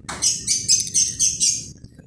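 A bird chirping: a quick run of about eight high chirps, roughly five a second, lasting about a second and a half.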